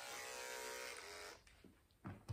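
Electric dog-grooming clipper running with a steady hum, then cutting off about one and a half seconds in.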